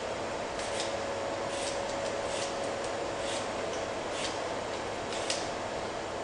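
Vegetable peeler scraping the skin off a cucumber in short repeated strokes, roughly one a second, over a faint steady hum.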